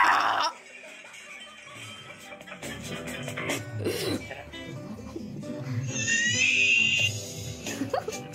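Video soundtrack played through a laptop's speakers: music mixed with clip sounds, with a rising high squeal about six seconds in and a sharp click near the end.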